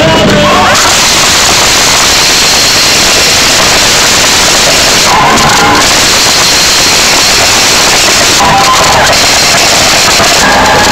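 Loud worship music with a crowd singing and cheering in a large hall, overloading the microphone into a harsh, even hiss. Snatches of a sung melody break through about five seconds in and again near the end.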